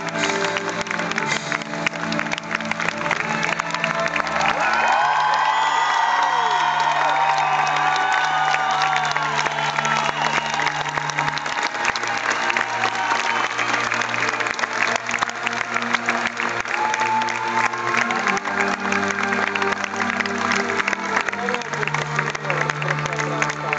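Live orchestra holding slow, sustained low chords while the audience applauds and cheers, with shouts and whoops strongest from about four to twelve seconds in.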